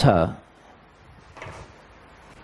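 A man's short spoken word, falling in pitch, at the very start, then quiet room tone with one faint, brief rustle or knock about a second and a half in.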